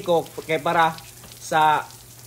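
A young man speaking in short phrases, with pauses between them.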